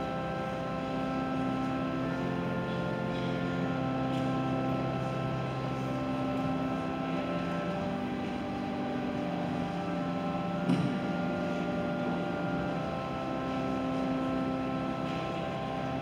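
Church organ playing slow, held chords that change every second or two, with a single knock about eleven seconds in.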